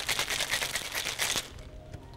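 Ice rattling in a cocktail shaker as it is shaken hard, a fast run of clatters that stops about one and a half seconds in.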